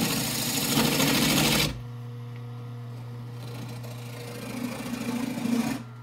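Wood lathe turning a bowl blank: a gouge cutting into the spinning wood gives a loud, even hiss for about the first second and a half. Then it stops, and the lathe's motor runs on with a steady low hum.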